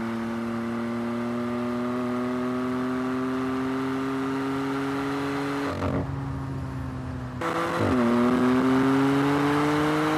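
BMW M3's twin-turbo inline-six accelerating hard under load, its note climbing slowly in a long pull. About 6 s and again about 8 s in the pitch dips briefly at a gear change before climbing again.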